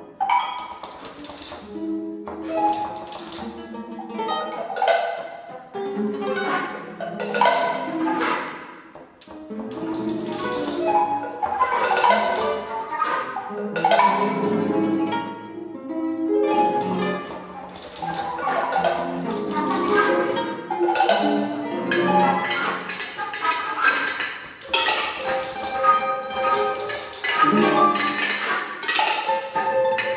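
Contemporary chamber music played live by flute, trumpet, harp, guitar and mallet percussion: scattered plucked and mallet-struck notes that ring and fade, over and among held tones, in irregular gestures with short pauses.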